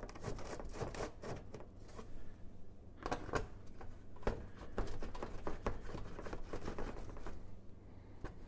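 Irregular light clicks and scrapes of a screwdriver and bolts against a car's underbody shield as the shield is lined up and its bolts are started by hand.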